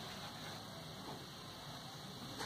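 Faint, steady hiss of room tone with no distinct sound in it.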